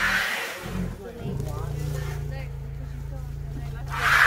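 Asian elephants hissing, a sharp breathy blast at the start and another at the very end, over a low, steady, engine-like rumbling growl that begins about a second in: adults alarmed and guarding their calf.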